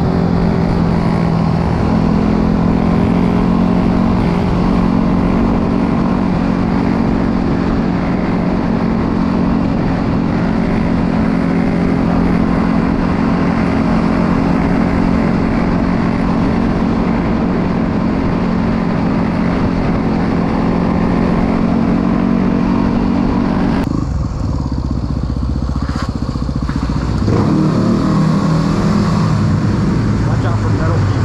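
Dirt bike engine running at steady, high revs under way, with wind rush over the microphone. About 24 seconds in the engine note drops away and changes, then picks up again a few seconds later.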